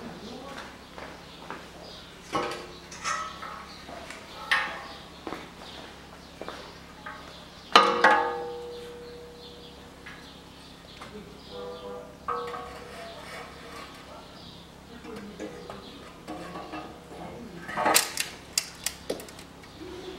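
Metal clanks, scrapes and knocks as a rusty exhaust manifold is handled and fitted onto its studs on the cylinder head. Some knocks ring on briefly. The loudest is a ringing clank about eight seconds in, and a quick run of sharp clicks comes near the end.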